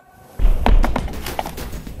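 Box jumps onto wooden boxes: a low rumble of thuds with sharper knocks starts suddenly about half a second in.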